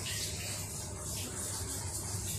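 Steady background hiss with a faint low hum beneath it, with no distinct events.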